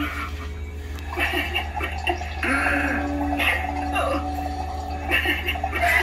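Spirit Halloween Evelyn Leech animatronic playing its sound track: a low, rasping, wavering voice, over a steady low hum.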